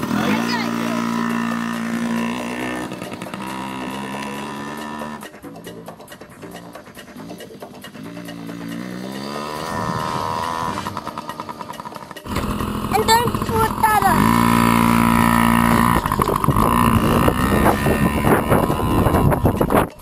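Small Yamaha children's dirt bike engine revving up and down in pitch as the bike pulls away and rides off. About two-thirds of the way through, the sound changes abruptly to a louder engine note.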